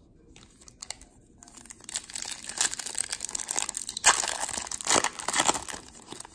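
Foil wrapper of a 2019 Bowman trading card pack crinkling as it is handled and torn open. The crinkling starts about two seconds in, with the sharpest crackles a little after the middle.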